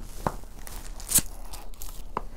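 Plastic wrapping on a cardboard kit box being torn and crinkled by hand: a handful of short crackly rips, the loudest just past a second in.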